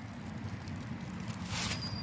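Quiet outdoor background with a low rumble, and one brief rustle in dry leaf litter about one and a half seconds in.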